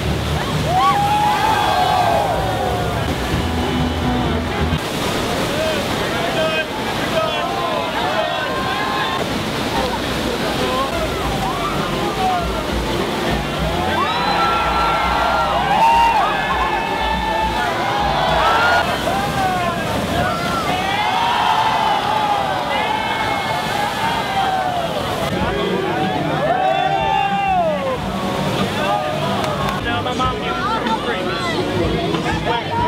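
Rushing whitewater in a rapid, a steady roar, with many people whooping and shouting over it, the yells thickest in the second half.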